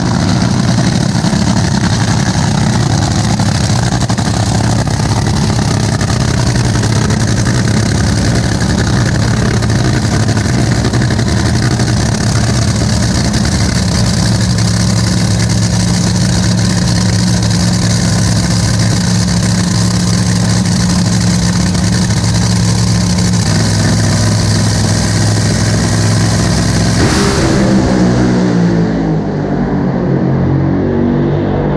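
Top Fuel dragster's supercharged nitromethane V8 running steadily and very loud at the starting line. About three seconds before the end it launches at full throttle: the sound changes abruptly and its pitch sweeps down as the car pulls away.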